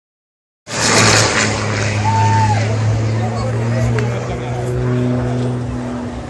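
Aerobatic propeller plane's engine droning as it flies past, loudest about a second in and slowly fading as it climbs away, with onlookers' voices mixed in.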